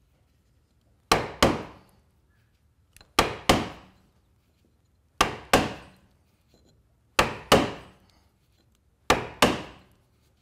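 Small leather mallet striking a caulking iron, driving cotton caulking into the plank seam of a wooden boat hull: five pairs of sharp taps about two seconds apart. The first tap of each pair tucks a loop of cotton into the seam and the second sets it.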